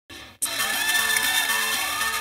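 Catwalk music with an audience cheering, cutting in suddenly about half a second in after a brief silence.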